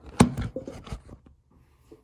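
Handling noise from a phone being positioned and set down: a sharp knock about a quarter second in, several smaller knocks and rubs through the first second, then a few faint taps.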